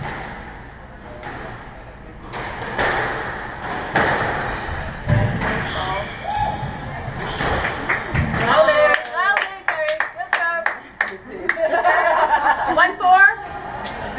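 A squash rally: the ball cracks sharply off the racquets and court walls, coming fast and close together about two-thirds of the way in, with voices over it toward the end.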